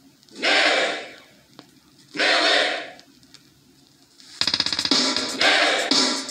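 Music played from a vinyl record on a turntable through a DJ mixer. Two short swells of sound come about half a second and two seconds in, and about four and a half seconds in a track with a steady drum beat starts.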